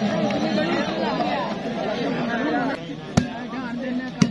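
Overlapping chatter of players and spectators, then a single sharp smack about three seconds in: a hand striking the volleyball on the serve.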